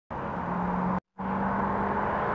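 Steady engine hum with a low steady tone, broken by a brief silent dropout about a second in.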